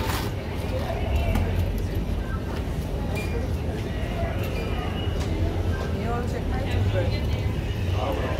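Airport departure-lounge ambience: a steady low rumble with other people's voices talking in the background, and a few short clicks and rustles as a backpack is handled.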